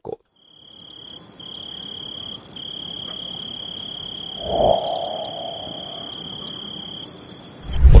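Crickets chirping as a comic sound effect: a steady high trill with a couple of short breaks over a faint hiss, with a louder, lower call about halfway through.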